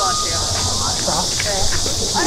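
A steady, high-pitched chorus of summer cicadas, with several people's voices talking underneath.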